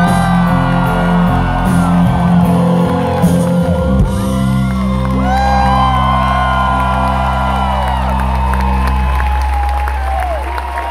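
A live rock band's closing chord ringing out, with low bass notes held until about a second before the end, while a crowd in the hall whoops and cheers.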